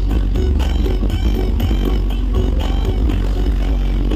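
Loud dance music from a truck-mounted "sound horeg" speaker system, heard from right beside the speaker stacks. It has very heavy bass and a steady beat.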